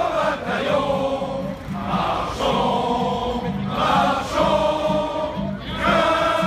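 A crowd of many voices singing together in unison, in long held phrases that change pitch every second or two.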